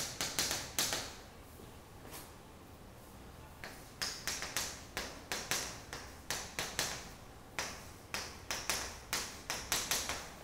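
Chalk writing on a chalkboard: quick sharp taps and short scrapes, several a second, as words and a formula are written. The strokes pause for about two seconds after the first second, then run on steadily.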